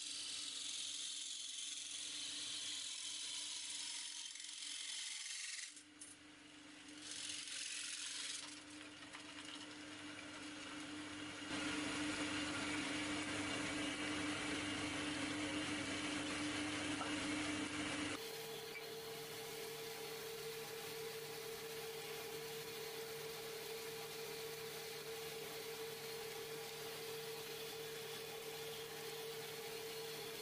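Belt-driven wood lathe running with a steady hum while a hand-held chisel cuts the spinning rosewood blank, a high scraping hiss. The sound shifts abruptly three times, and the hum is higher-pitched for the last third.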